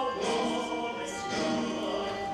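A song sung with musical accompaniment: held, sustained vocal lines with a full, choir-like sound.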